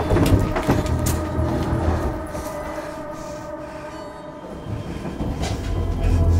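Horror film score or sound design: a dark, rumbling drone of several held tones with a metallic, train-like clatter and screech, a few sharp knocks in the first second, easing off midway and swelling again near the end.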